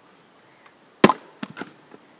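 A splitting axe strikes a log round once, about a second in, with a sharp crack, followed about half a second later by two lighter wooden knocks.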